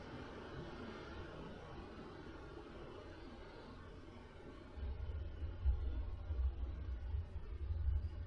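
Faint steady hiss, then from about five seconds in a low, uneven rumble from the storm outside.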